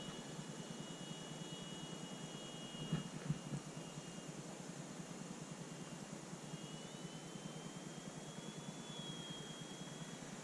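Faint, thin high whine of distant electric-powered radio-control model airplanes flying overhead, over a steady hiss. One whine fades out about three seconds in and another rises slowly in pitch through the second half. A few short knocks come about three seconds in.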